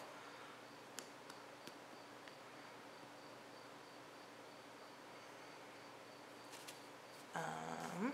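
Near silence: quiet room tone with a faint, high, pulsing tone running through it and two faint clicks a second or two in. A brief hummed voice sound comes near the end.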